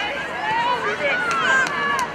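Several women's voices shouting and calling over one another during rugby play, the shouts overlapping and rising and falling in pitch.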